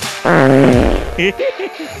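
Comic fart sound effect: one long wobbling fart, followed by a few short ones, over background guitar music.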